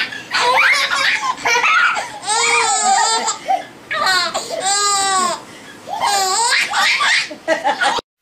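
Four-month-old baby laughing in several bursts, two of them long and high-pitched.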